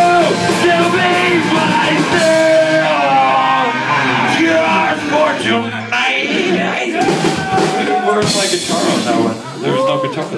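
Live rock band playing: a lead singer's held, sung notes over guitar, bass and drums.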